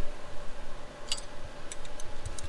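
A few light metallic ticks, about a second in and again near the end, from a hand tool tightening a clamp-on trial weight on a crankshaft in a balancing machine.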